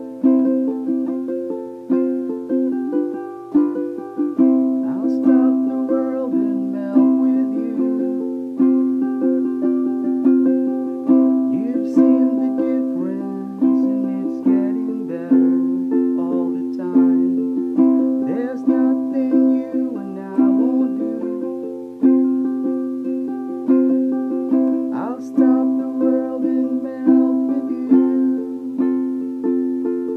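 Ukulele in standard G-C-E-A tuning played in a repeating triplet strum, with sharp stroke attacks and the chords changing every few seconds.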